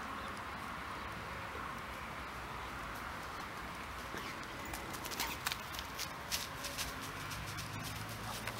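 Faint, steady creekside ambience, with frogs and birds calling in it. From about halfway through come light, irregular footsteps on grass and soil.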